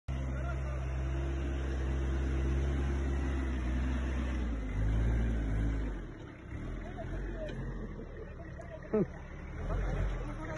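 VST Shakti MT 932 compact tractor's diesel engine running under load as it pulls through deep mud. The engine note rises briefly about five seconds in, then falls away about a second later. A short laugh comes near the end.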